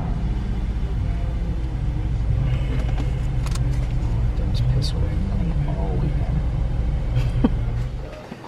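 Car engine idling, a steady low rumble heard from inside the cabin while the car waits in a drive-thru line.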